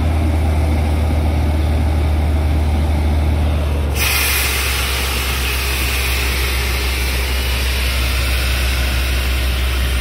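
Borewell drilling rig's engine and air compressor running steadily with a low hum. About four seconds in, a loud hiss of compressed air starts blowing out of the borehole, flushing water and cuttings up out of the hole.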